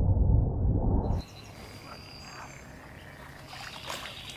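A loud, muffled low sound of animal calls, most likely frogs croaking, cuts off abruptly about a second in. Quiet outdoor wildlife ambience with faint high chirps follows.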